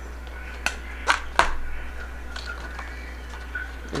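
Scissors snipping through a Hoya vine stem for a cutting: three sharp snips within about the first second and a half, the last the loudest, followed by a few faint handling clicks.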